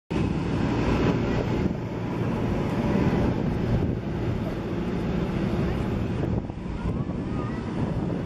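Steady low rushing noise, the mix of an inflatable bouncy obstacle course's electric air blower and wind buffeting the microphone. A few faint high squeaks come near the end.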